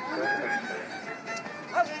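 Solo fiddle playing a traditional tune for rapper sword dancing, with voices around it and a short loud call near the end.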